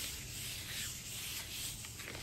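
Hands rubbing the back of a sheet of rice paper laid on a paint-covered gel printing plate, pressing the paint into the paper: a steady, soft rubbing hiss.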